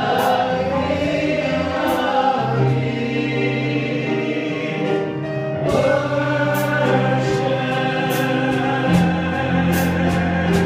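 Men's voices singing a gospel worship song in held, sustained lines over a digital piano accompaniment.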